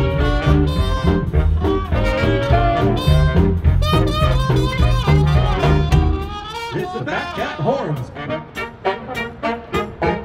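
Live swing band playing, with horns (saxophone, trumpet, trombone), upright bass and drums. About six seconds in, the bass drops out and the music turns quieter and sparser, with sharp regular accents.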